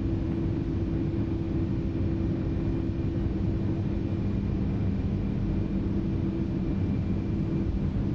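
Steady interior noise of a Boeing 757 in flight: an unchanging drone of engines and airflow with a low hum.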